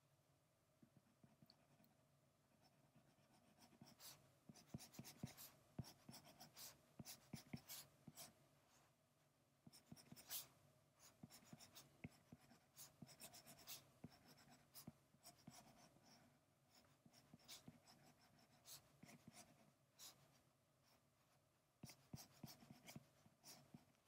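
Faint taps and scratching of a stylus drawing on an iPad's glass screen, in quick short strokes that start about four seconds in and come in clusters with brief pauses.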